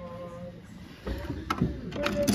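Light ukulele music fades out. Then a £1 coin goes into the kiddie ride's coin slot, with a couple of sharp clicks from the coin mechanism about one and a half seconds in and again near the end.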